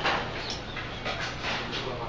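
Clatter of metal serving tongs and plastic cafeteria trays: a string of short clicks and knocks, with voices in the background.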